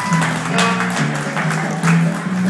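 Live bluegrass band playing: strummed acoustic guitar over a steady upright bass line, with the fiddle coming in.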